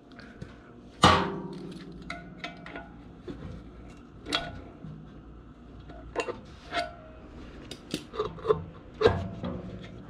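Clanks and clicks of a wrench and pliers against a sheet-metal blower wheel and its housing while the bolt holding the wheel's hub on the motor shaft is loosened. A sharp clank about a second in rings on like struck sheet metal, then lighter scattered clicks follow.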